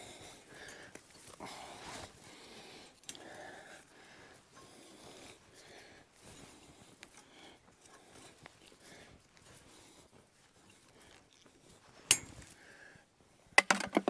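Faint scraping and rustling of tie wire being wound by hand around wire netting, with a sharp metallic click about twelve seconds in and another near the end.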